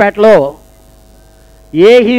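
A man speaking into a handheld microphone over a public address system. He stops about half a second in and starts again near the end, and in the pause a steady electrical mains hum from the sound system is heard.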